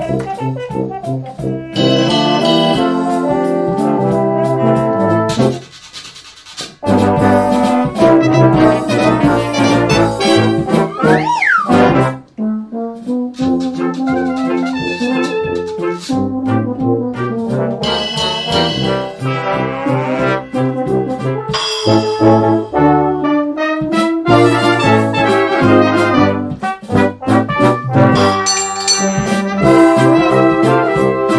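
Full brass band playing: cornets, horns, euphoniums, tubas and trombones, with drum kit and tuned percussion. The music drops away briefly about six seconds in, and a quick rising-and-falling pitch slide cuts through a little before the middle.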